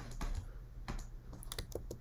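Light, irregular clicking and tapping of computer input gear as handwriting is put on a digital screen, with a quick cluster of clicks in the second half, over a faint steady hum.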